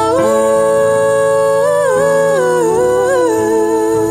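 Music: a singer's wordless 'oh, whoa, oh' line, the voice stepping and sliding between notes over held low accompaniment notes.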